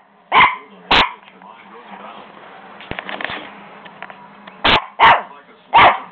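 Puppy barking in short, sharp barks: two about half a second apart near the start, a pause, then three more in quick succession near the end.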